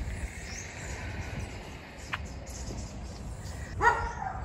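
Outdoor ambience: faint distant birds calling, with one short chirp about two seconds in, over a low rumble.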